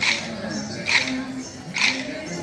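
Kolatam dancers' wooden sticks clacking together in unison, three strikes about a second apart, over music with a steady melody.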